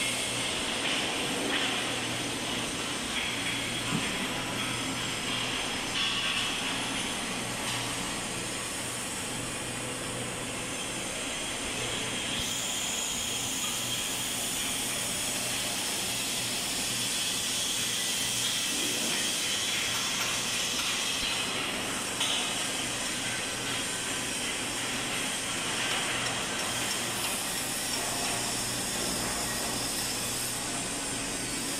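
Steady workshop noise in a steel fabrication shop: a constant low machinery hum under a hiss, with a few short knocks, around two and six seconds in and near the 22-second mark.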